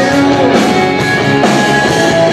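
Live rock band playing loudly: electric guitar strummed over bass and drums.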